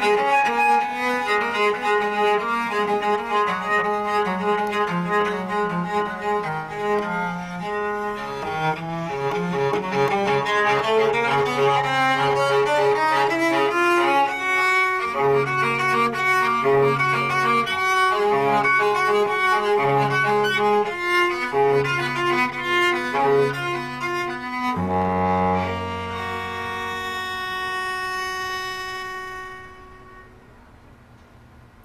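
Solo Baroque cello with sheep-gut strings, bowed in a fast passage of running notes. About 25 seconds in it settles on a final low note with a chord above it, held and ringing for several seconds.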